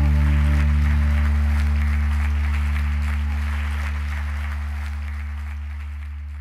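A low sustained chord held by the band, slowly fading out at the end of a live worship song. Scattered applause from the congregation sits underneath and fades with it.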